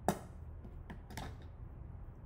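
Yellow plastic magnetic wand knocking on a wooden desk top: one sharp click just after the start, then a couple of fainter taps about a second in.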